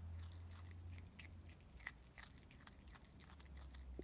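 Common brushtail possum chewing a piece of raw carrot: faint, irregular crunches over a low steady hum.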